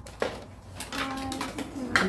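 Hard plastic clicks and knocks as the body and parts of a new cordless stick vacuum are handled: a sharp click just after the start and a few lighter ones later, with a brief soft voice in the middle.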